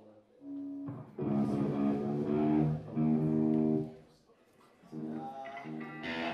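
Amplified electric guitar ringing out long held chords: a couple of quieter notes, then two loud sustained chords from about a second in, fading away around four seconds before quieter notes resume.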